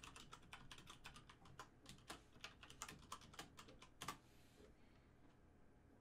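Faint typing on a computer keyboard: a run of quick keystrokes that stops about four seconds in.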